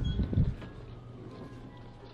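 Soft low thumps of a handheld camera being carried through a doorway in the first half-second, then faint handling noise over a steady low hum.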